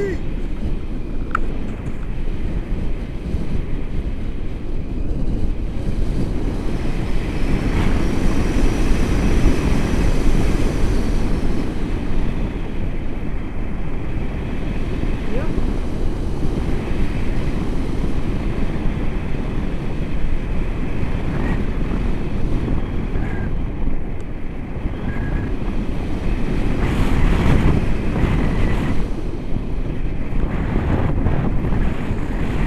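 Wind rushing over the camera microphone in flight under a tandem paraglider: a steady low rumble of airflow that grows louder around eight seconds in and again near the end.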